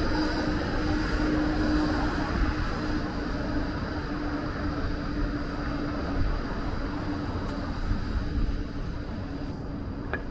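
City street traffic noise with a tram passing and moving off, over a steady low hum; the noise eases a little toward the end.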